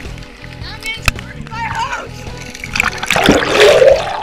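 Loud splashing and churning water near the end as the camera is dunked under the pool surface and the swimmer thrashes past, with lighter splashing before it. A steady background music track with a regular beat runs under it.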